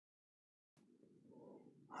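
Near silence: dead silence, then faint room tone from the microphone coming in about three-quarters of a second in.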